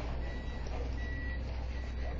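A UPS delivery truck's backup alarm beeping while the truck reverses: short single-pitched beeps, about one every three-quarters of a second, over a steady low hum.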